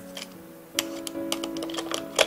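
Background music, with light clicks and taps from a Shimano SPD-SL plastic cleat and its bolts being handled against a cycling shoe's sole; one click just after the start, then a quick run of them from about three-quarters of a second in.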